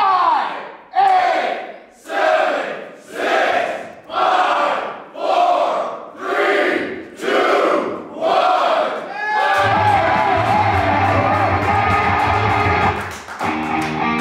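Voices chanting one short shout over and over in a steady rhythm, about once a second. About nine and a half seconds in, loud rock music with heavy bass and electric guitar starts, typical of a wrestler's entrance theme. Near the end it settles into a plucked guitar riff.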